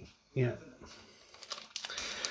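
Faint crinkling of plastic packaging being handled, with small clicks that grow louder near the end.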